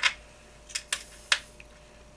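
Three light, sharp clicks from a hex driver and a small screw being handled against the metal chassis parts of a 1/5-scale RC car, the first two close together about three-quarters of a second in, the third about half a second later.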